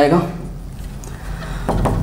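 A man's spoken word trailing off, then a pause filled by a steady low room hum, with a brief noisy rustle just before the end.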